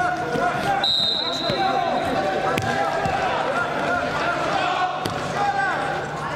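Voices shouting and calling in a sports hall during a wrestling bout, with dull thuds of the wrestlers' bodies on the mat as one rolls the other. A steady high tone starts about a second in and lasts about a second and a half, and two sharp knocks come later.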